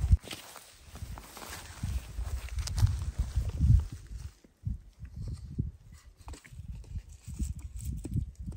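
Footsteps and rustling over dry grass and stones, as a series of irregular low thumps with a rustling hiss over the first half, then handling in the grass as a hand reaches down between the rocks.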